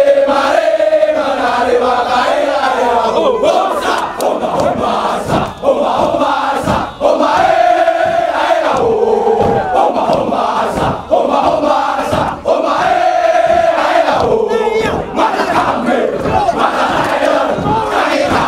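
A large company of soldiers chanting and shouting a military yell in unison, with sharp short beats between the shouted phrases.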